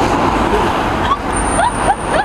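Steady road traffic noise from passing cars, with voices in the background.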